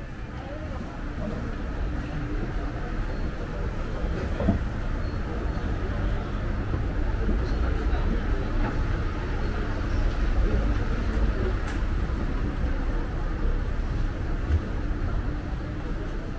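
Deep rumble of a passing vehicle, building over the first few seconds, staying loud through the middle and easing off near the end, over urban street noise with people's voices and a couple of short knocks.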